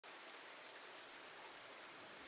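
Faint, steady rain, an even hiss with no separate drops or other events.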